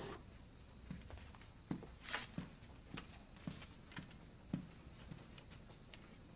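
Soft footsteps and light knocks, about two a second and irregular, with one longer rustle about two seconds in, over a steady background of crickets chirping.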